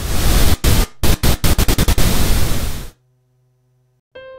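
A recording of staccato bursts of hiss-like noise played back, loud and choppy, with short gaps and a quick run of stabs in the middle. It cuts off suddenly about three seconds in.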